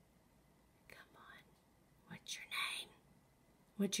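Two short, faint whispered, breathy voice sounds, one about a second in and a longer one just past two seconds in.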